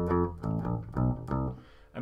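Electric bass guitar picked with a plectrum, playing a few notes of a funk bass line one by one: a held note, then about three short notes that stop about a second and a half in.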